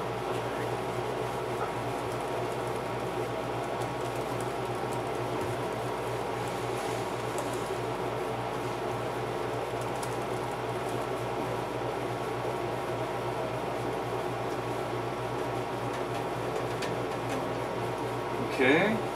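Steady machine hum, like a fan or air-conditioning unit running in a small room, with a few faint clicks from laptop keys being typed on.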